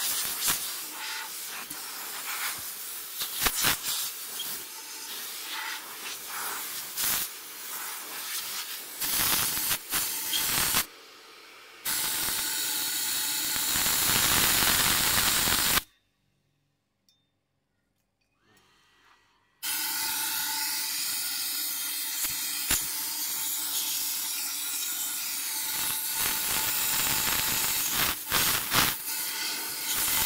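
Homemade wash-pump sprayer hissing as it sprays, uneven and in spurts at first, then steady. The hiss cuts off suddenly for about three seconds past the middle and comes back steady.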